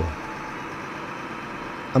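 Steady engine and road noise of a city bus, heard from inside the passenger cabin.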